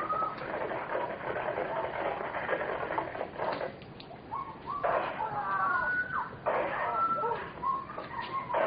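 A person's high, wavering wordless cries over a telephone line, recorded on a 911 call. The cries come in several bursts and are loudest past the middle.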